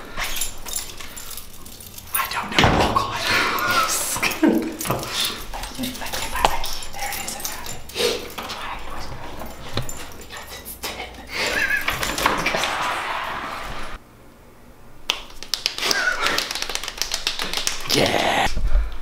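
A dog whining and yipping in short gliding cries, several times, mixed with clicks of a key in a door lock and the door being opened.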